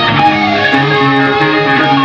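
A progressive rock band playing live, with electric guitar over bass, on an analog cassette recording that has a dull, muffled top end.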